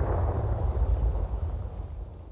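A deep, low rumble, like the tail of a boom, fading slowly away.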